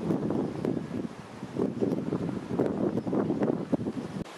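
Wind buffeting the camera microphone in irregular gusts, with a low rumble and several brief louder surges.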